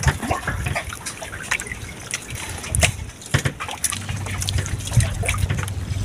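Sea water sloshing and trickling against the hull of a small outrigger boat, with scattered light knocks and clicks.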